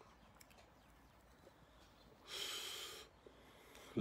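A man's breath while smoking: one breathy rush of air lasting under a second, a little past halfway, against near silence.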